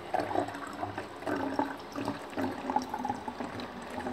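Liquid gurgling and sloshing inside a large plastic bottle held close, a continuous run of small irregular bubbling sounds.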